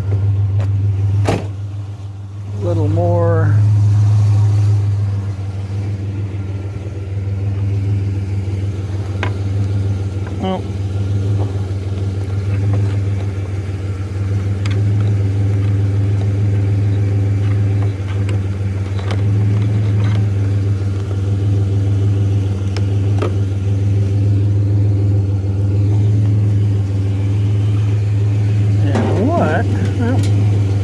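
Chevrolet pickup truck's engine idling steadily, a low even hum throughout, with a sharp knock just over a second in.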